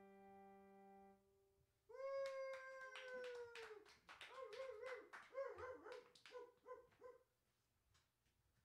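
An electric keyboard's final chord fading away, then a small audience clapping for a few seconds, with a high, wavering call sounding over the claps.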